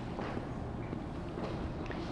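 Quiet room tone of a lecture hall with a few faint light taps and footsteps.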